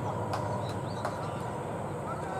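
Steady low outdoor background rumble with small birds chirping now and then, and two faint knocks.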